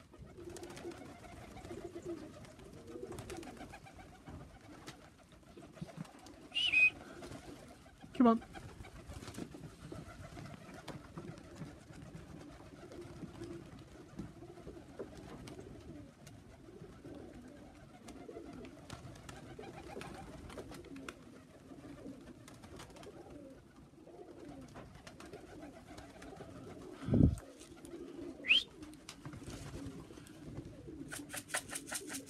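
Tippler pigeons cooing steadily, with a few short louder sounds breaking in: a high squeak about seven seconds in, a falling whistle a second later, and a low thump followed by a brief rising squeak near the end.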